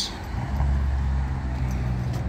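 A car engine running steadily at low revs, a low hum that comes in about half a second in and holds level.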